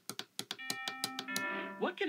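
Aluratek Stream WiFi internet radio's speaker: a quick run of clicks as the volume is changed on its touchscreen, then a two-note chime, the second note lower. A voice starts from the streamed station near the end.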